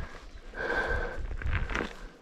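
A hiker's footsteps scuffing on a steep slope of loose dirt and gravel, with heavy breathing.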